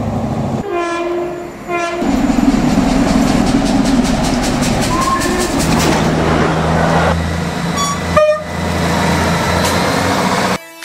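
A sequence of passing trains. A Class 80x Hitachi train's horn sounds two short blasts, then steam locomotive 6233 Duchess rushes through with a fast rhythmic beat and a short whistle note about five seconds in. After that a Class 158 diesel unit's engine hums steadily and its horn gives a two-note blast, high then low, near the end.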